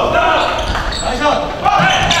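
Basketball bouncing on a hardwood gym floor with echo in the large hall, mixed with indistinct players' voices.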